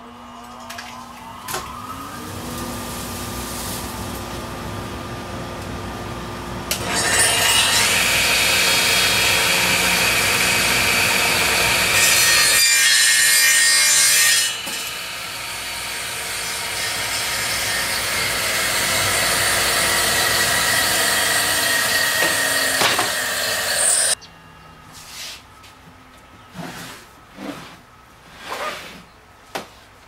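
Radial arm saw motor spinning up with a rising whine, then running and crosscutting a long wooden board, loudest for about seven seconds in the middle. The saw noise stops abruptly about six seconds before the end, followed by a few short rubs and knocks of wood being handled.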